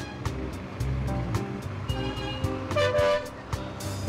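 Background music with a steady beat, with a car horn honking briefly about three seconds in.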